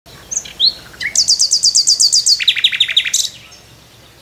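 Bird song: a few separate high chirps, then a fast trill of repeated descending notes, about eight a second, that drops to a lower, slower-sounding trill and stops a little after three seconds in.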